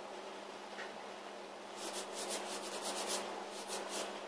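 Fingers rubbing in quick strokes across the surface of a gypsum-board panel model, starting about halfway in at roughly five strokes a second.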